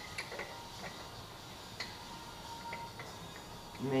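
Faint, scattered light metallic ticks as a clutch puller is threaded by hand into the centre of a Can-Am Maverick X3 primary clutch.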